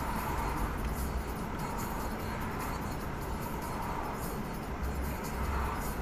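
Steady car-cabin noise of a car waiting at a traffic light, a low even rumble of the engine and passing traffic, with music playing faintly.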